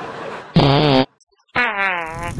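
A fart sound about half a second in: one loud, low, pitched blast lasting about half a second that cuts off suddenly.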